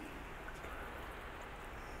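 Low, steady hiss of a small fan running together with the aeroponic system's submersible pump spraying nutrient solution through its nozzles, both switched on the same cycle timer.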